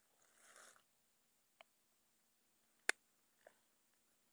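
Faint handling sounds of a hook being worked out of a snakehead's mouth among grass and dry leaves: a brief rustle near the start, then a few small clicks, the sharpest about three seconds in.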